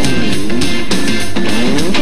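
Rock music in an instrumental stretch: guitar over a drum kit, with notes gliding down and back up in pitch.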